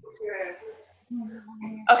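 Quiet speech, with a short steady held vocal sound in the second half.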